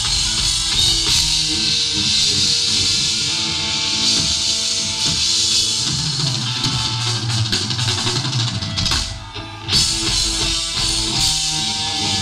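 A crossover thrash band playing live and loud, with drums and distorted electric guitars, heard from within the crowd. About nine seconds in, the music drops away for a moment, then comes back in loudly.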